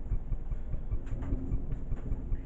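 Low, steady rumble of handling noise on a handheld camera's microphone as it pans, with a faint brief hum near the middle.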